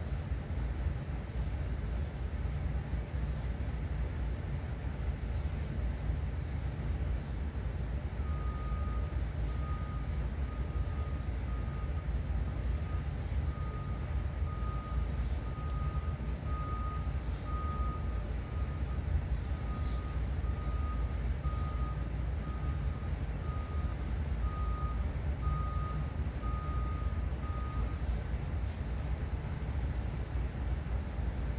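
An electronic beep repeating about once a second, starting about eight seconds in and stopping near the end, over a steady low rumble.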